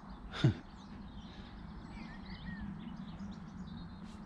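Several small songbirds singing faintly and continuously in mixed short warbles and chirps, a chorus of warblers such as blackcaps, reed warblers and whitethroats. About half a second in, a short falling sigh close to the microphone stands out above them.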